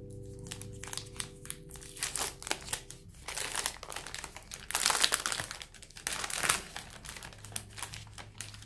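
Foil and plastic wrapper of a Cadbury milk chocolate bar crinkling as it is peeled open by hand, in a run of quick crackles that gets loudest around the middle.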